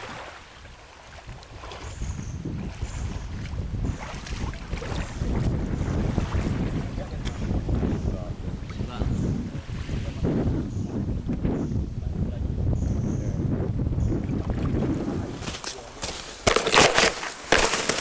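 Wind buffeting the camera microphone as a steady low rumble. Near the end come several loud knocks and scrapes as the camera is jostled on the ground.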